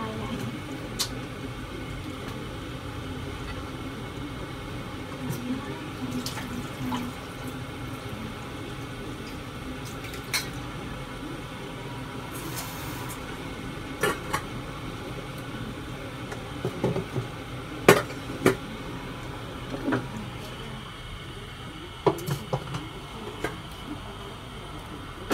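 Steady background hiss with scattered sharp clicks and knocks, as of small objects being handled, the loudest about eighteen seconds in.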